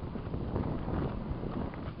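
Wind buffeting the microphone, a steady low rumble that flutters unevenly.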